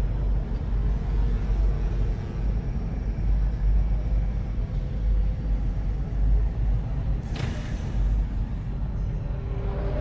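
Sci-fi spaceship ambience: a deep, steady machinery rumble, with a short hiss of venting air from a pneumatic release about seven seconds in.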